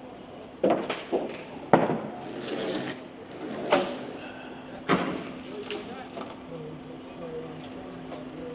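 Demolition workers stripping hoarding boards and sheeting off a shopfront: about five sharp bangs and clatters, three in the first two seconds and two more near four and five seconds in. A steady low hum runs underneath from about two and a half seconds in.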